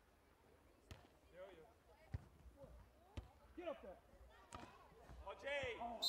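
A volleyball being struck during a beach volleyball rally, from the serve through the following hand contacts: four sharp hits about a second apart. Faint voices call out between the hits, louder near the end.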